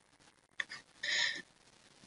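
A pause in a voice-over: mostly silence, with a faint click about half a second in and one short, soft breath just after a second in.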